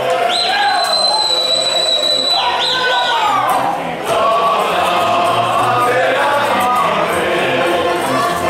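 A group of voices singing a Romanian folk song with fiddle accompaniment. A high steady tone is held for about two seconds near the start.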